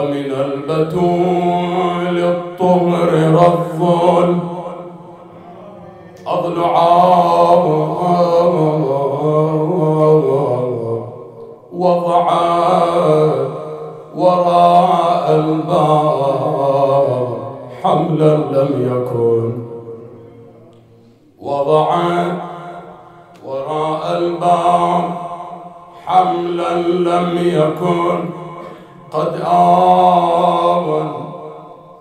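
A man's solo voice chanting a Shia mourning elegy through a microphone, in long drawn-out melodic phrases with short breaks between them.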